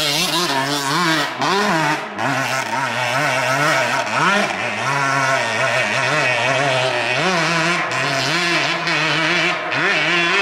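Several dirt bike engines revving, the pitch rising and falling again and again as the throttle is worked on a steep dirt hill climb.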